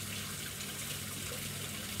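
Steady, even background hiss with a faint low hum beneath it, and no distinct events.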